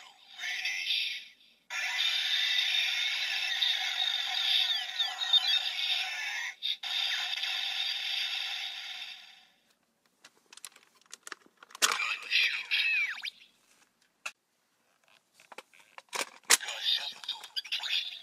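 Electronic voice calls and music played through the small speaker of a DX Gashacon Bugvisor toy with the Kamen Rider Chronicle Gashat inserted, running for about eight seconds. After that come plastic button clicks and handling, with two more short bursts of toy sound.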